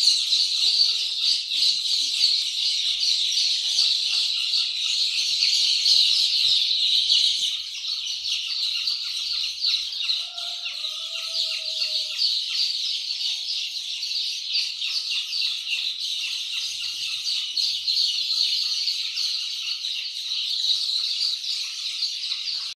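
A large flock of week-old Rhode Island Red chicks peeping continuously: a dense, high-pitched chorus of many overlapping cheeps.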